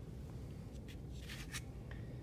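Faint paper rustling as a paper fish cutout is picked up and turned over by hand, with a few soft brushes of paper.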